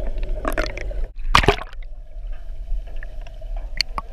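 Underwater air bubbles heard through a camera housing: a steady low rumble with short crackling bursts of bubbling, the loudest about a second and a half in.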